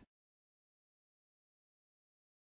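Silence: the sound track is empty.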